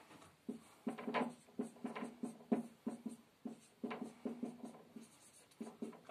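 Dry-erase marker writing on a whiteboard: a run of short, irregular strokes with brief gaps between them.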